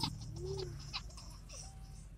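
Steady low drone of a car's engine and road noise heard inside the cabin while driving slowly in traffic, with a brief vocal sound about half a second in.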